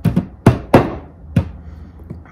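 Granite pestle pounding whole cardamom pods, black peppercorns and cloves in a granite mortar to crush them toward a powder: about five sharp knocks, unevenly spaced.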